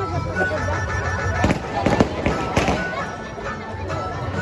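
Firecrackers going off: several sharp bangs in quick succession around the middle, over crowd chatter and music.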